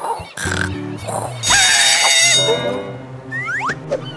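Cartoon soundtrack: background music under squeaky, wordless character vocalisations, with a loud drawn-out cry from about a third of the way in to just past halfway and quick rising squeaks near the end.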